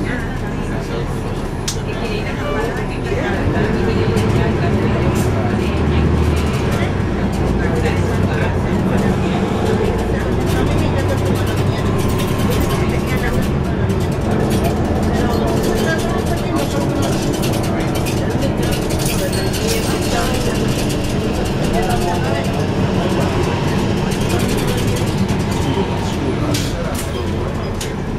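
Interior of a NABI 40-SFW transit bus heard from the rear seats: the rear-mounted diesel engine runs steadily while the bus drives, getting louder about three seconds in, with passengers' voices in the background.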